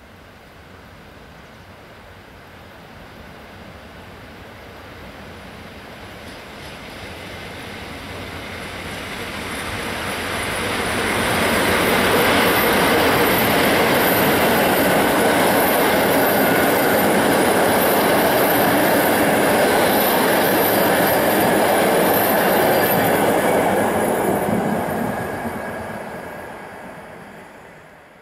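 PKP Intercity IC passenger train approaching and passing at speed. The rumble of wheels on rail swells over about ten seconds and holds steady for about twelve seconds as the coaches go by, with a thin high-pitched whine above it, then fades quickly near the end.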